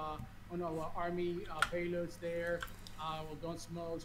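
Speech only: a man talking, with a single faint click about one and a half seconds in.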